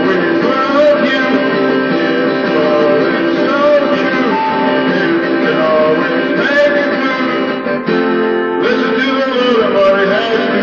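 Live acoustic guitar strummed steadily, with a flute playing a melody over it and a man singing. The music dips briefly just before the end.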